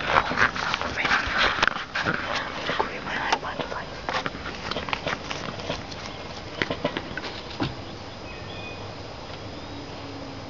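Dense rustling and crackling clicks, like someone moving through tall grass with a handheld camcorder, dying down after about eight seconds to a steady hiss.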